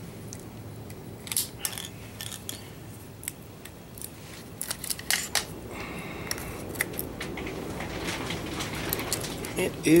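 Scattered light metallic clicks and clinks from alligator-clip leads being handled and carried to a car battery, over a steady background rush that grows a little louder in the second half.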